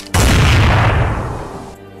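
A single loud gunshot sound effect, a sudden heavy bang that dies away over about a second and a half.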